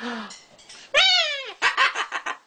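Cockatoo calling: a short call at the start, then a loud call about a second in that falls steeply in pitch, followed by a few short sounds.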